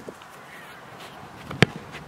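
A single sharp thud of a boot striking an Australian rules football in a kick for goal, about one and a half seconds in.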